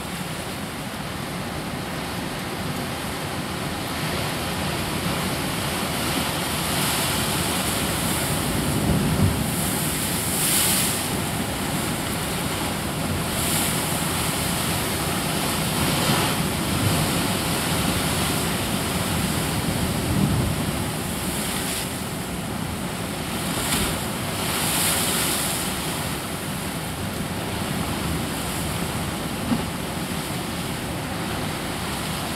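Sea surf washing over a rocky shore: a steady rush of water noise that swells and eases several times, with wind on the microphone.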